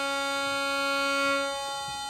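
An electronic tuner sounds a steady reference D while the top D string of a bass viol (viola da gamba) is bowed against it and tuned to match it by turning its peg. It is one steady, unwavering pitch with many overtones, and part of the sound drops away about three-quarters of the way in.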